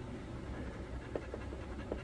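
A coin scratching the latex coating off a scratch-off lottery ticket: a soft, steady scraping with a few light ticks about a second in and near the end.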